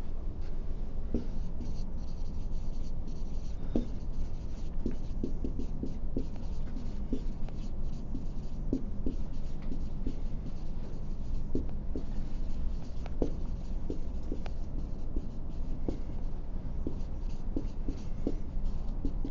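Handwriting on a classroom board: a steady run of short strokes over a low room hum.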